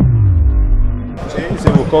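The end of a news channel's intro jingle: a deep bass tone sliding downward. A little over a second in, it cuts abruptly to a man speaking over background noise.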